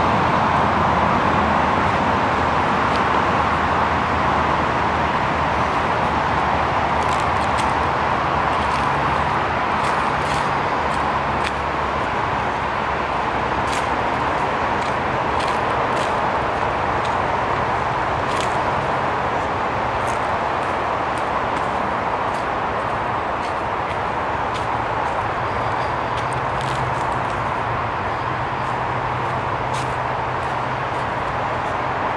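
Steady wash of distant road traffic, easing off slightly, with occasional faint crunches of footsteps on a dirt trail.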